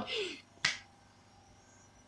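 The tail of a woman's spoken phrase, then a single sharp click about half a second later, followed by quiet room tone.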